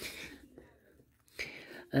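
A quiet pause with a man's soft breathing and faint murmur, a breath in about a second and a half in, then the start of a drawn-out "uh" at the very end.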